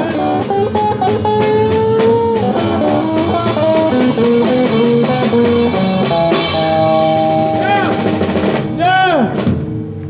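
Live electric blues band: electric guitar lead with bent notes over electric bass and drum kit. A strongly bent guitar note rises and falls about nine seconds in.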